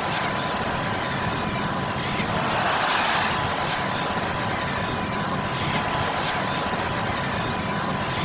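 Steady noise of a large stadium crowd, swelling a little about three seconds in, with a faint steady high tone running underneath.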